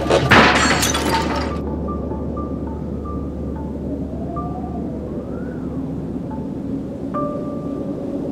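AI-generated western film score with sustained held tones and slow sliding notes. A loud crash, like something shattering, fills the first second and a half.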